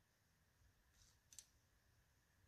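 Near silence, with a couple of faint high clicks a little over a second in: an arrow being handled and nocked on a recurve bow.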